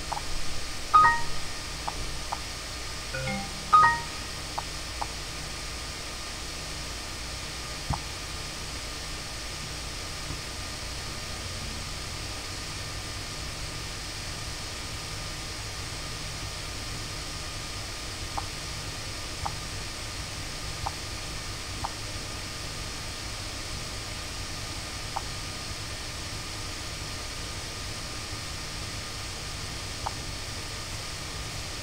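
A few short electronic chimes in the first four seconds, of the kind Windows XP plays for a system notice such as its 'Found New Hardware' balloon. Then a steady hiss with a few faint, scattered clicks.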